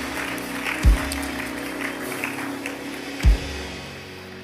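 Church worship music: a held chord with two deep drum thumps, about a second in and near the end, under light applause from the congregation. The music fades toward the end.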